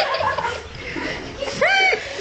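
A single short, high-pitched squeal near the end, one arching cry lasting about a third of a second.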